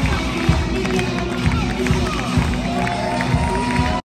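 Loud music with a strong beat playing over an arena's PA system, mixed with crowd noise and a voice, in a large echoing sports hall.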